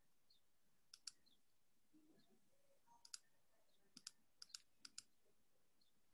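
Faint clicking at a computer against near silence, mostly in quick pairs, about five pairs spread over a few seconds.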